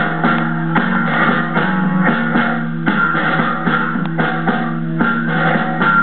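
Live rock band playing: electric guitar over a sustained low held note, with sharp strummed or struck hits every second or so.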